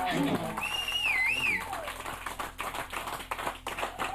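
The last notes of a live rock song die away, followed by a small audience clapping and cheering, with a high whoop about a second in.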